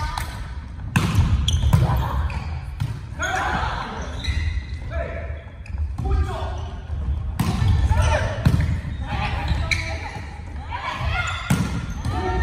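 Volleyball rally in a large gym hall: the ball is struck by hands several times, each hit a sharp smack, about a second in, near two seconds, around six and seven seconds, and just before the end.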